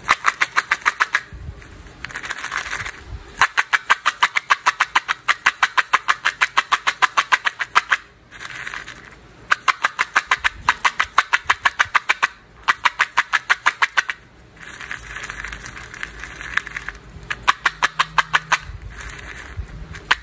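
Red candy-coated chocolates rattling against the sides of a small plastic cup as it is shaken in quick bursts, about seven or eight clicks a second. Between the bursts there are softer stretches of the candies rolling and swirling.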